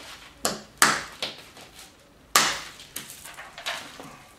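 A hammerstone strikes a small flint core held on a stone anvil in bipolar knapping. About six sharp stone-on-stone cracks are heard, with the two hardest blows coming just under a second in and a little past two seconds. The blows split the core, which shatters into flakes.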